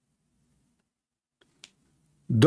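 Near silence: room tone, with one short click about one and a half seconds in.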